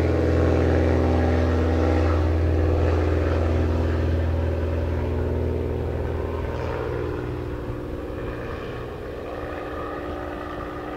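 Britten-Norman BN-2 Islander's twin propeller engines at takeoff power: a steady drone with a strong low hum as the aircraft rolls, lifts off and climbs away, fading gradually over the second half.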